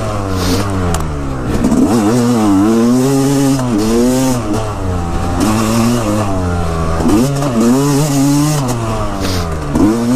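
Yamaha dirt bike engine revving up and down under way, its pitch climbing and then dropping several times as the throttle is worked and gears change, with bursts of wind rush over it.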